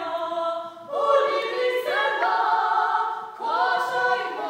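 Mixed-voice choir singing unaccompanied Georgian-style polyphony in held chords. Two short breaks, about a second in and again near the end, are each followed by a new chord sliding in.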